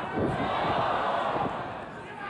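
Arena crowd shouting and cheering in one swell that eases off about a second and a half in.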